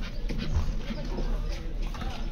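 Busy market street ambience: indistinct voices of passers-by with a steady low rumble and scattered knocks.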